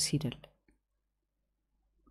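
A woman's voice trailing off in the first half-second, then dead silence with a faint tick.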